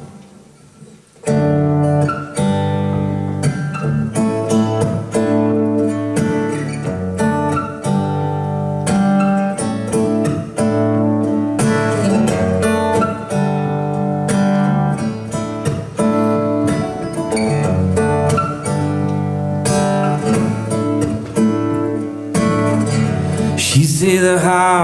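Acoustic guitar and clean electric guitar playing a song's instrumental intro, picked notes over a steady low pulse; the playing comes in about a second in after a brief hush.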